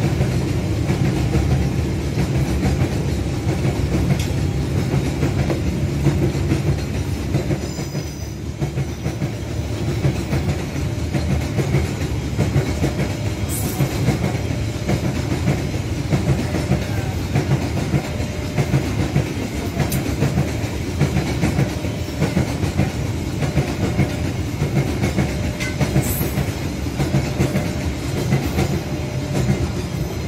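Container freight train's flatcars rolling past at close range: a steady rumble of steel wheels on the rails, dipping slightly about eight seconds in.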